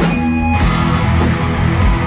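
Live pagan metal band playing at full volume, led by electric guitar, with the sound growing fuller and brighter about half a second in.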